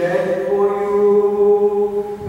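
Liturgical chant: voices holding one long sung note, steady in pitch, that breaks off briefly at the very end.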